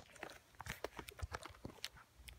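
Faint, scattered small clicks and taps from a handheld phone camera being handled.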